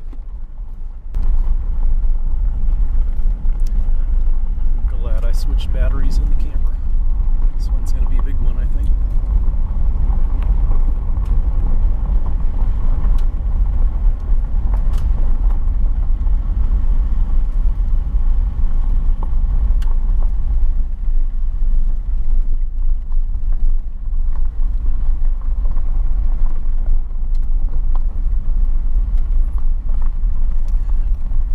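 Vehicle driving on a dirt road: a steady low rumble of tyres and engine, which gets louder about a second in.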